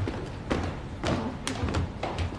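Footsteps of a few men walking past: a series of dull thuds about twice a second, with an occasional sharper click.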